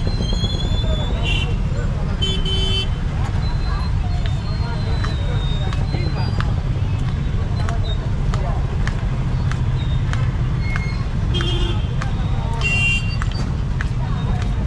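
Street traffic: a steady low rumble of vehicles with short horn toots, a few in the first three seconds and again a little before the end, and scattered sharp clicks.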